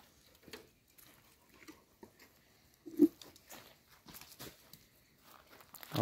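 A wooden stick scraping and knocking faintly inside an aluminium pot, working loose thick dog-feed mash stuck to the bottom and sides, with one louder short sound about three seconds in.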